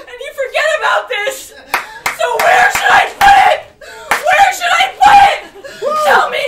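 A woman's loud, high-pitched voice in exaggerated, emotional vocalising, with a couple of sharp smacks about a second and a half in.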